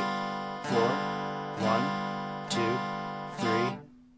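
Acoustic guitar strumming an easy-form G7 chord on the top four strings, five even strums a little under a second apart, letting the chord ring and die away for the rest beat near the end.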